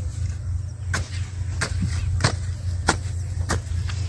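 Small hand hoe (kasola) chopping into clumpy soil to loosen it, with about five strikes roughly two-thirds of a second apart, over a steady low rumble.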